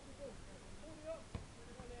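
Faint distant shouts of footballers calling across the pitch, with one sharp thud a little past halfway.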